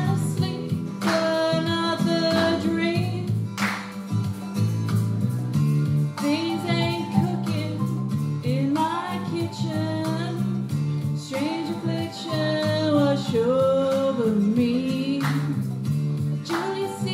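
A woman singing a song into a microphone, amplified through a PA, over a steady instrumental accompaniment.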